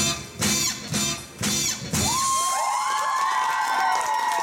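Dance music with sharp accented beat hits that stops about halfway through, followed by the audience cheering with high, rising and falling cries.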